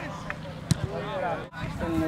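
Shouting voices on a soccer field, with a single sharp thud of a soccer ball being kicked about 0.7 s in. The sound dips out briefly at an edit about a second and a half in.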